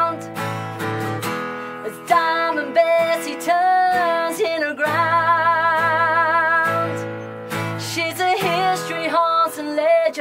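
Two acoustic guitars strummed and picked together, with a woman singing long held notes with vibrato over them.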